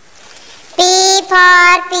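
A child's voice singing a line of an alphabet song, in two long held syllables starting about three quarters of a second in, with another beginning near the end.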